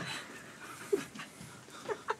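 Faint, quick breathy panting from a person close to the microphone, with a soft brief vocal sound about a second in.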